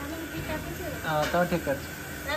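A voice speaks briefly about a second in, over a steady background hiss.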